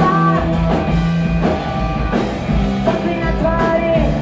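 Live rock band playing: a woman singing over electric guitars and a drum kit.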